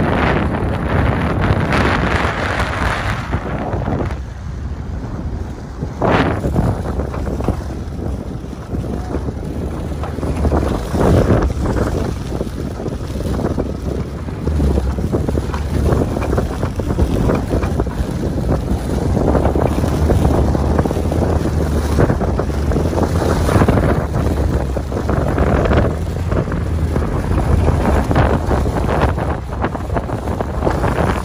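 The VW Passat driving hard through soft, sticky sand, its engine kept under load to hold momentum: a steady low rumble with tyre and body noise, and gusts of wind buffeting the microphone.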